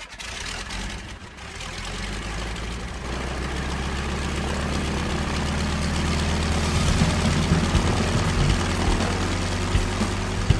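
A piston aircraft engine running steadily at a low pitch, growing gradually louder.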